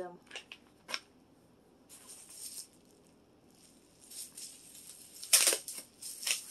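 Plastic packaging rustling and crinkling as items are handled, with a few small clicks early on and the loudest crinkle about five seconds in.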